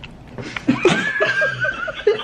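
A person laughing: a high-pitched run of quick laughing bursts that starts about half a second in.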